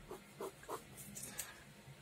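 Faint, quick strokes of a pen scratching on sketch paper, about five short strokes. The pen is running out of ink.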